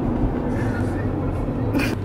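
Steady low rumble of a moving car heard from inside the cabin: road and engine noise, with a faint murmur of voice over it.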